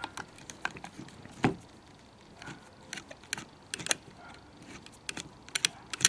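Irregular small clicks and scrapes of a screwdriver turning a steel screw out of an air rifle's cylinder, as the rifle is handled, with a louder knock about one and a half seconds in.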